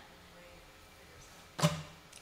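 Quiet room tone, then a single sharp knock about one and a half seconds in.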